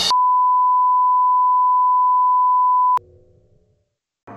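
A steady electronic beep at one pure pitch, held for about three seconds and cut off with a click.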